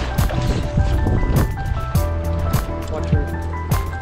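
Background music with a steady beat over sustained held notes and a low bass.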